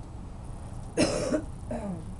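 A person coughs once, a sudden sharp burst about a second in, followed near the end by a short vocal sound that falls in pitch, like a throat clearing.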